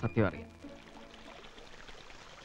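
Water falling from a tiered fountain, a steady faint rush that comes in just after a man's last word ends about half a second in.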